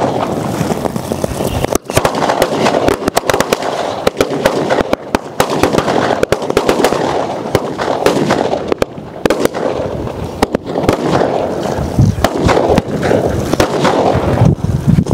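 Firecrackers bursting on the ground in rapid succession: a dense, continuous crackle of sharp bangs with no real pause.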